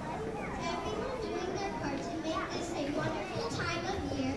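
Many children's voices chattering and calling out at once, a steady babble of kids talking over one another.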